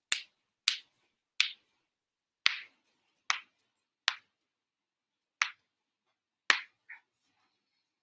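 Computer keyboard keys struck one at a time, sharp separate clicks about once a second.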